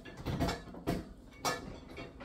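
Plastic BeanBoozled game spinner being spun, giving three clicks about half a second apart.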